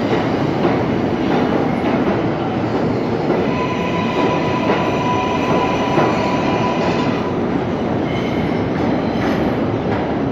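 R142A New York City subway train pulling out of the station and running off down the tunnel: a steady rumble of wheels on rail with occasional clacks. A steady high tone sounds for a few seconds in the middle.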